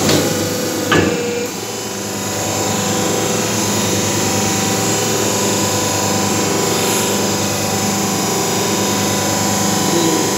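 Hydraulic power pack of a semi-automatic paper plate making machine running with a steady hum while the die presses a plate. Two sharp knocks about a second apart near the start as the control valve lever is thrown, and the hum grows a little louder about two seconds in.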